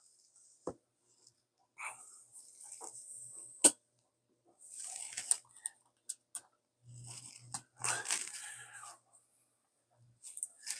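Faint handling sounds: scattered light clicks and rustles, with one sharper click a little before the middle.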